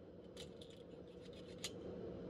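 A quick run of small, sharp metallic clicks from a pistol being handled, the last one the loudest, over about a second and a half.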